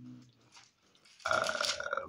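A man's drawn-out, throaty "uh", steady in pitch, starting a little over a second in, after a brief low murmur at the very start.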